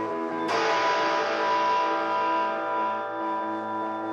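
Live band with electric guitars holding a sustained chord. About half a second in, a loud strummed chord hits and rings out, fading over a couple of seconds.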